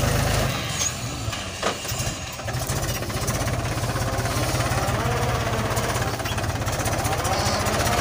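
Mahindra 265 DI tractor's three-cylinder diesel engine running steadily with a rapid, even beat as it pulls a disc harrow through the soil. It is a little quieter for a couple of seconds near the start.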